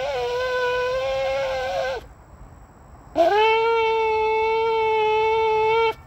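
A ram's-horn shofar blown in two long blasts. The first is already sounding and ends about two seconds in. The second starts about a second later, scooping up into a steady note, and is held until it cuts off near the end.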